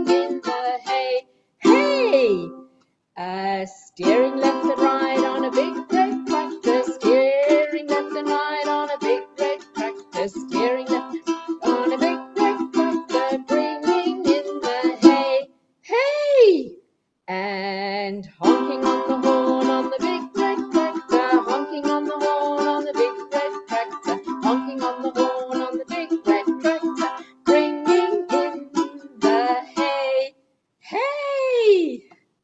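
Ukulele strummed in a steady, bouncy rhythm while a woman sings a children's action song. The strumming breaks off briefly a few times, and twice near the middle and end a voice slides up and down in a quick vocal sound effect.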